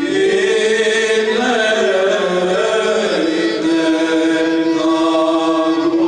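Unaccompanied male voices singing Greek Orthodox Byzantine chant: a steady low drone is held while a melody line moves and turns above it, settling onto a long held note about halfway through.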